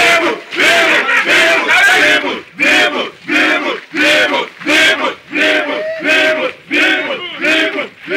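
A crowd of men shouting a short chant together, over and over on a steady beat, about two shouts a second.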